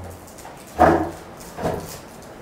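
Two short wordless vocal sounds from a man, the first louder, about a second apart.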